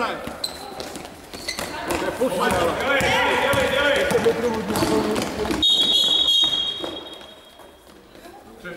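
Voices calling out and a basketball bouncing on a hardwood gym floor during play, then, about two-thirds of the way through, a long steady high-pitched whistle blast of about two seconds from the referee, stopping play.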